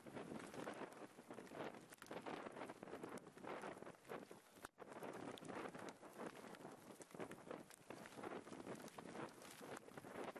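Gusty wind buffeting the camera's microphone: a dense, crackling rustle that rises and falls, with a brief dropout just before five seconds in.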